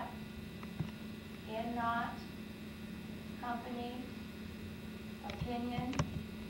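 Steady electrical hum, with brief indistinct voices in the room three times, about every two seconds.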